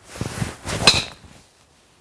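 Mizuno JPX 850 driver swung through with a rising whoosh, then a loud, sharp, ringing strike as its face hits the golf ball just under a second in.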